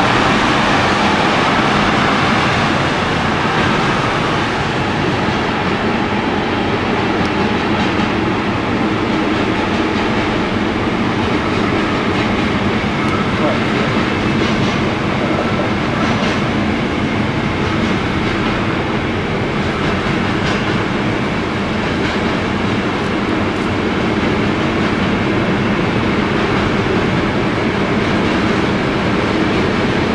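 Freight train rolling past at close range: a steady, loud rumble of wagons on the rails, with a few light clicks from the wheels in the middle.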